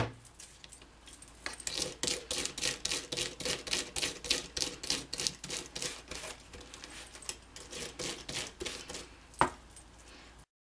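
Stiff-bristled die brush scrubbed rapidly back and forth over die-cut black cardstock on a Detailed Dragonfly Thinlits metal die, a few scratchy strokes a second, to push the small cut-out paper pieces free. A single sharper click comes near the end.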